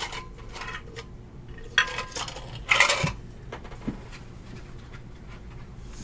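Clattering handling noises on a tabletop: three short bursts in the first three seconds, the last the loudest, then a single light tap about four seconds in.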